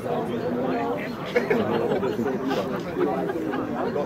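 Chatter of several people talking at once, their voices overlapping, with one brief sharp sound about a second and a half in.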